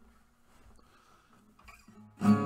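Near silence: faint room tone with a faint steady low hum.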